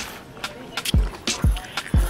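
Background hip-hop beat: deep kick drums with a falling pitch, landing about every half second in the second half, with sharp snare and hi-hat hits between them.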